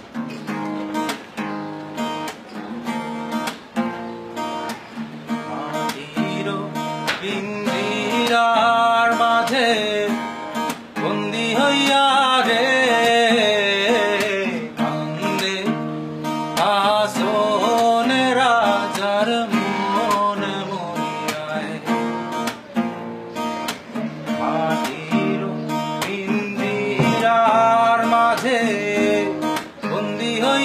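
Cutaway acoustic guitar being played. From about eight seconds in, a man sings along in phrases with short breaks.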